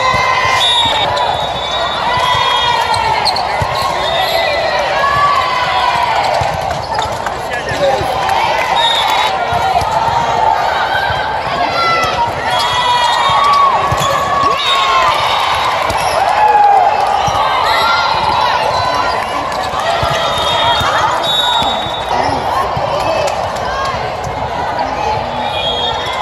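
Volleyball rally: the ball is struck and bounces a few times, sharp single hits, while players and spectators call out and chatter.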